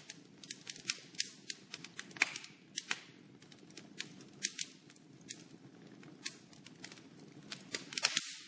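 Faint crackling fire: irregular sharp snaps and pops, a few a second, over a low steady hiss.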